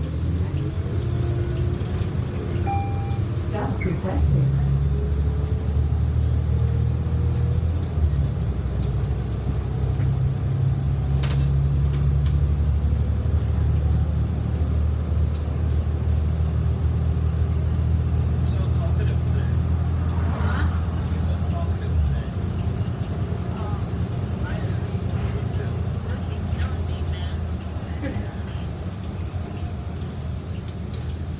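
Transit bus engine and drivetrain heard from inside the cabin, rising in pitch as the bus accelerates over the first few seconds, then a steady low drone at cruising speed that eases off about twenty seconds in. Short rattles and clicks from the bus interior come and go.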